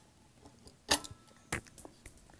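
Brass stem of a frost-proof hose bib being pulled out of the faucet body by hand: a sharp metallic click about a second in, then a second click followed by a brief run of light rattling ticks.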